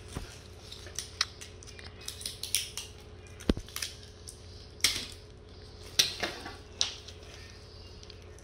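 Handling noise as a cardboard Santa cutout is wrapped around a plastic-wrapped paper towel roll and taped: crinkling paper and plastic with a string of short sharp clicks and taps, the loudest a little past the middle.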